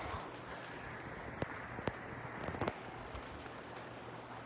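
Paper rustling with a few sharp clicks and taps as a spiral-bound planner is pulled into place and its pages pressed flat on a desk.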